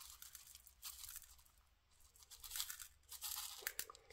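Coarse rock salt sprinkled from a small plastic tub onto soft drained curd cheese: a faint, crisp, grainy rustle in a few short spells.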